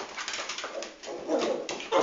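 Yorkie puppy and another small dog playing, making short throaty play noises in uneven bursts, strongest near the end, with scuffling on the carpet.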